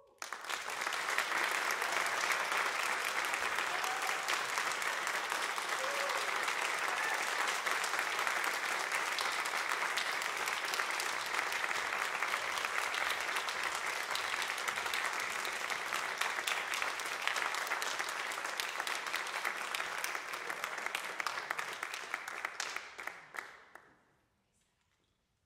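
Audience applauding, starting all at once and holding steady, then fading out over the last couple of seconds into a few scattered claps.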